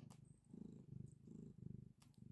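Domestic cat purring faintly, a low rapid rumble that swells and fades a few times with its breathing.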